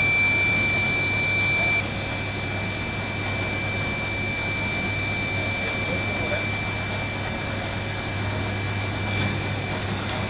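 Hot air seam sealing machine running: a steady blower rush with a thin high whine and a low hum as seam tape is fed through its rollers. About two seconds in the hiss drops a little, and it rises again near the end.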